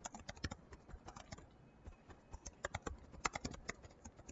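Computer keyboard typing: quick irregular runs of keystrokes, sparser for a moment in the middle.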